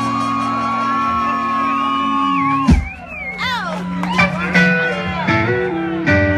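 Live soul band playing: a held chord with a sustained high note rings out, then cuts off about three seconds in. After that a singer's shouted, wavering vocal lines come over short guitar notes.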